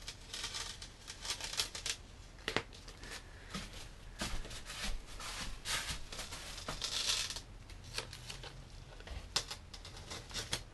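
Masking tape being peeled off the rail of a surfboard's tack-free epoxy hot coat and the peeled strip handled: irregular short scratchy rips and crinkles, with a longer, louder peel about seven seconds in.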